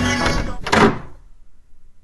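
A wooden interior door swung shut with a single thud a little under a second in. Music cuts off just before it.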